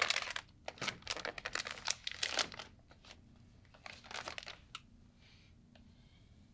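Rustling and crinkling as hands work through long hair close to the microphone, in dense bursts for the first two and a half seconds and again briefly about four seconds in.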